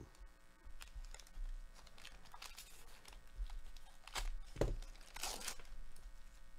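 Foil trading-card pack wrapper crinkling and tearing in a run of short crackles, loudest a little past four seconds in and again near the end.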